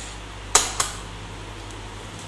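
Two sharp clicks about half a second in, a quarter second apart, the first louder: a screwdriver knocking against a laptop's hard plastic base. A steady low electrical hum runs underneath.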